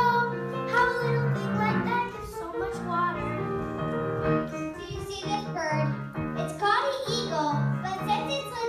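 A child singing a show tune over sustained musical accompaniment.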